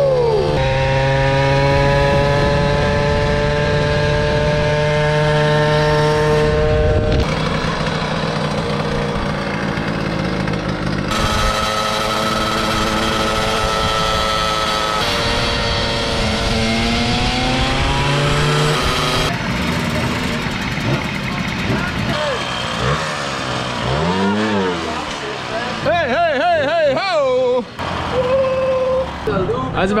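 Small two-stroke moped engines running on the road in several cut-together stretches, the pitch climbing slowly as a moped picks up speed. Near the end a voice wavers up and down in pitch over the engine noise.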